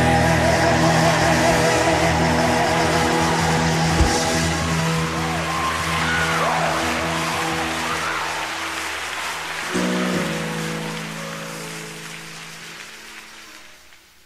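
Closing bars of a gospel song. Choir and band hold sustained chords under a solo voice's wavering, ornamented lines. A last chord comes in about ten seconds in and the music fades out.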